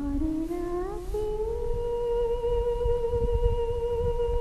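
A high singing voice in a song: it climbs through a short rising phrase, then holds one long note with a slight vibrato.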